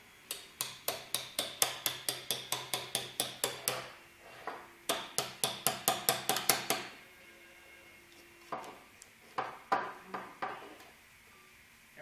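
An adjustable wrench used as a hammer taps a thin metal blade, each strike a short ringing metal-on-metal knock, driving the blade under a large 3D print stuck to the taped build plate. The knocks come in a fast run of about five a second for a few seconds, then a second shorter run, then a few spaced taps.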